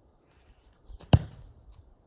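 A football kicked hard from a standing ball, one sharp thud of boot on ball about a second in, with a softer thump just before it.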